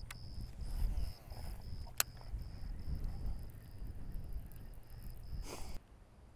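An insect chirping steadily outdoors, short high chirps at one pitch about three times a second, over low rumbling noise. There is one sharp click about two seconds in and a brief hiss just before the sound drops quieter near the end.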